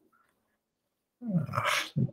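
Near silence, then a person says a drawn-out "Oh" about a second in.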